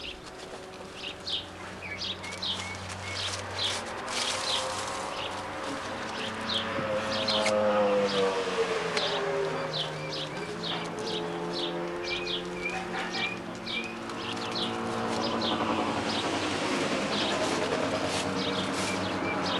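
Small birds chirping repeatedly in short, high notes throughout. Under them runs a lower steady hum whose pitch dips and rises, loudest near the middle.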